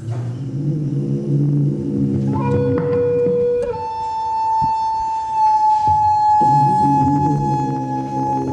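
Free-improvised ambient music: a low, layered drone, joined about two and a half seconds in by a long held high tone that steps up in pitch a second later and then stays steady.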